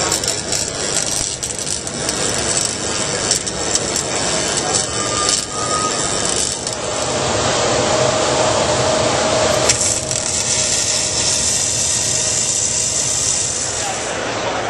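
Trade-show crowd noise with clinks, then, about seven seconds in, an electric welding arc starts on a pipe joint. It runs as a steady, even hiss and stops near the end.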